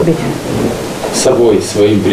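Indistinct, muffled speech over a steady low hum of room noise.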